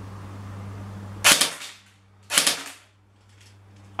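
CYMA MP5 airsoft electric gun firing two single shots about a second apart, each a sharp crack that dies away quickly.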